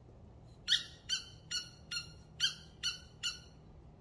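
A squeaky dog toy squeezed seven times in quick, even succession, about two and a half short squeaks a second.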